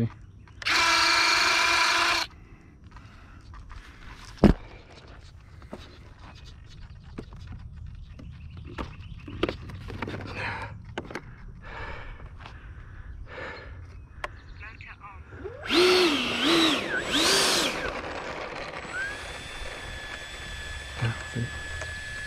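A small electric motor on an RC jet whines at a steady pitch for about a second and a half near the start, then stops cleanly. Quieter handling rustles follow, with one sharp click, a warbling sound near three-quarters of the way through, and a steady high tone near the end.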